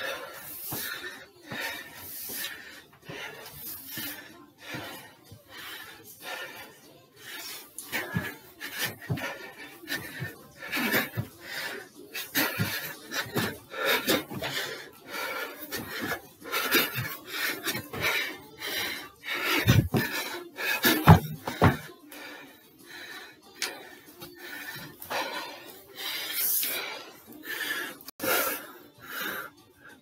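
Feet thudding and stepping on a staircase during repeated step or jump exercise, an uneven run of knocks about one or two a second.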